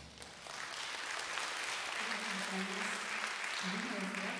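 Audience applauding, building up about half a second in as the band's last chord fades, and then holding steady.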